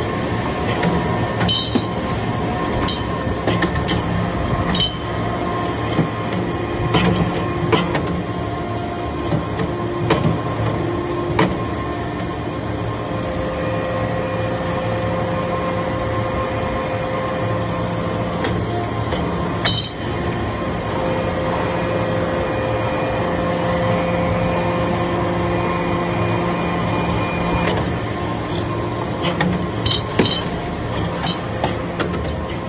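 Hydraulic briquetting press running while it compacts copper chips: the steady hum of its hydraulic pump unit, with pitched tones that rise in level and drop away over stretches of several seconds. Sharp metallic clicks and clinks come scattered through it.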